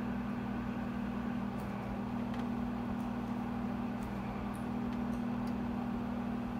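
Overhead projector's cooling fan running with a steady hum, while a marker writes on the transparency with a few faint ticks.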